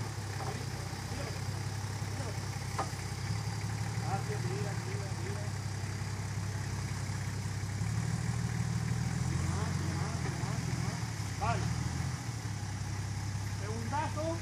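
Nissan Patrol GR Y60 engine running at low revs as the 4x4 crawls up out of a deep muddy rut. The engine note grows stronger from about eight seconds in and eases again after about eleven seconds.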